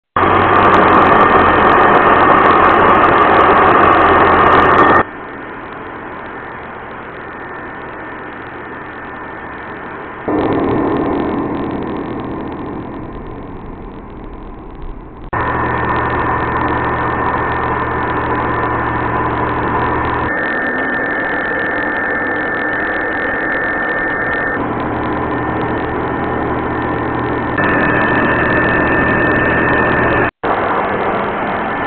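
Home-built CNC router's rotary-tool spindle running with a 3 mm carbide end mill cutting 19 mm MDF: a steady whine over a constant cutting noise. The level and pitch jump abruptly every few seconds.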